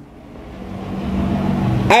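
A motor vehicle engine, steadily growing louder across the two seconds.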